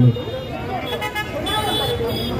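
Background chatter of several men talking over one another, with a high steady tone sounding through the second half.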